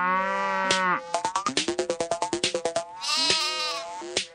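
Sheep bleating: several long, quavering bleats, with a higher-pitched bleat near the end, over background music.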